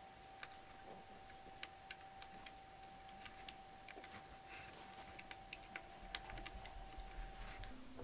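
Faint, irregular small clicks of a loom hook working rubber bands on a Rainbow Loom's plastic pegs, as the bands are hooked up and looped over one after another.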